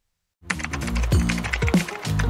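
After a moment of silence, music starts with deep bass notes sliding down in pitch, under a fast run of typing clicks as a typing sound effect.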